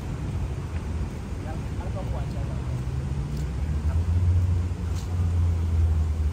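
Low rumble of city traffic, with a heavy vehicle's engine growing louder about four seconds in and then easing off near the end.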